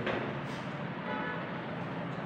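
Steady background noise with no clear source, and a faint click about half a second in.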